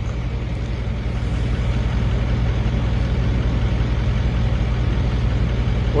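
A steady low mechanical hum that holds the same pitch and level throughout.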